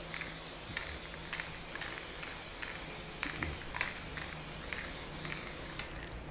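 Aerosol spray-paint can spraying in a steady hiss, with a few faint clicks, until the spray cuts off just before the end.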